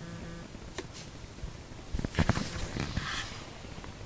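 Handling noise from the recording device as it is turned around: a cluster of clicks and rubbing about halfway through, after a single click near the start.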